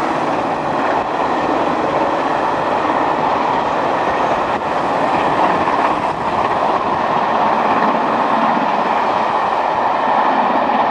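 Four-cylinder LMS Princess Royal class Pacific steam locomotive No. 6201 Princess Elizabeth running past at speed with its train. It makes a steady, loud rush of steam exhaust and wheel-on-rail noise.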